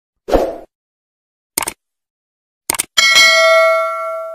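Edited intro sound effects: a short burst of noise, two pairs of quick clicks, then a bell-like ding struck about three seconds in that rings on and fades.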